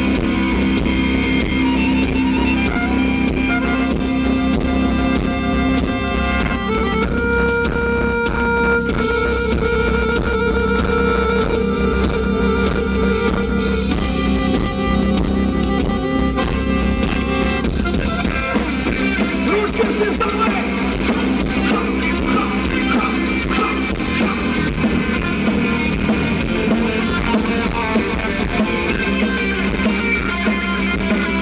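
Live rock band playing an instrumental passage through a concert PA: electric guitar, accordion, bass and drums, with held chords that change every few seconds.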